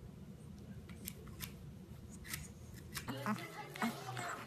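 A few faint, crisp clicks spaced irregularly over a low background, then a person's voice starting about three seconds in.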